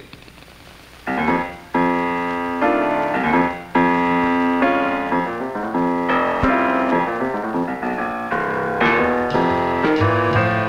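Jazz piano playing a blues written for the left hand only, starting about a second in with chords and runs.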